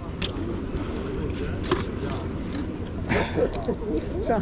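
Background voices of people talking, faint against a steady low hum, with a few short sharp knocks, the strongest near the end.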